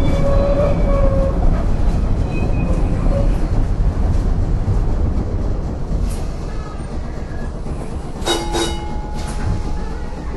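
Vintage electric streetcar running on its track: a steady low rumble of wheels and running gear, with faint wheel squeals in the first couple of seconds. Near the end come two ringing metallic strikes in quick succession, like a bell.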